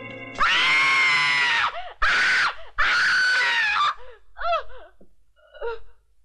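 A woman screaming: three long, loud, high-pitched screams, then shorter, weaker cries that die away. Music cuts off just as the first scream begins.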